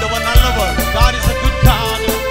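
Electronic keyboard playing a worship song with held chords and a programmed drum beat thumping under it, while a man sings a wavering melody over it through a microphone and PA.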